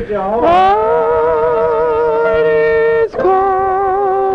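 A singer holding long, slow notes with vibrato, a sung carol, with brief breaks between phrases about a third of a second and about three seconds in.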